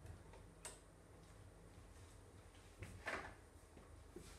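Near-silent room with a few faint handling clicks and a brief scraping rustle about three seconds in.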